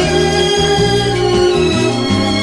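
Light orchestral easy-listening music: a held melody note over a moving bass line.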